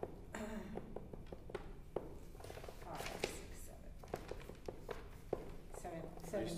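Scattered light taps and rustles of people handling pencils and workbooks, with a short stretch of faint, low speech near the start and again about halfway through.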